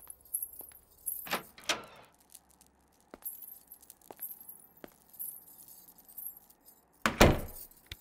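Light metallic jingling of jewellery, such as bangles, with soft scattered clicks of movement. A louder, sharper sound comes about seven seconds in.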